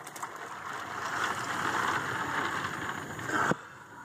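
Ice water sloshing and splashing as a bucket is filled from a cooler, ending with a sharp knock about three and a half seconds in.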